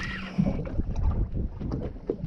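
Wind buffeting the microphone over open water, with water moving against a boat's hull and scattered light knocks.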